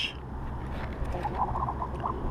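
A saltwater catfish croaking while held out of the water on the line: a quick run of short, evenly spaced grunts about a second in, over low wind and water noise.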